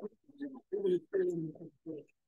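Indistinct, low-voiced speech in short phrases, words that the recogniser did not catch.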